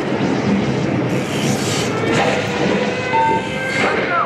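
Loud, steady rushing noise of static and roar from the Twister pre-show's speakers as its video screens cut to static, rising into a brighter hiss about a second in.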